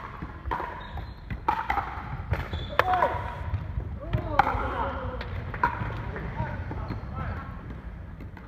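Pickleball play in a large indoor hall: a series of sharp, hollow pops from paddles striking the plastic ball and the ball bouncing on the wooden floor, irregularly spaced and most frequent in the first three seconds.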